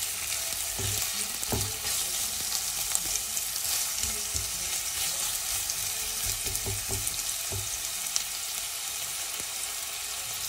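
Diced onion sizzling in hot oil in an enamelled pot, a steady hiss, while a silicone spatula stirs it, with irregular soft knocks and scrapes against the pot.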